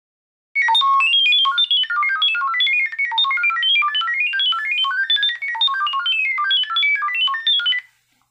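Smartphone speaker playing a security camera's sound-pairing signal: a rapid string of short beeping tones hopping between pitches, sending the Wi-Fi network details to the camera's microphone. It starts about half a second in and stops just before the end.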